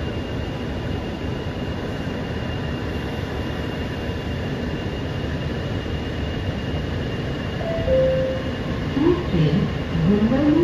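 Interior running noise of a Mumbai Metro MRS-1 train (Hitachi SiC inverter, PMSM traction motors) under way between stations: a steady rumble with a thin, steady high tone. Near the end come two short descending tones, then a voice begins.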